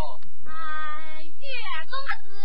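A Chinese opera performer's high, stylized stage voice delivering a line, with one long steady held note from about half a second in, lasting most of a second.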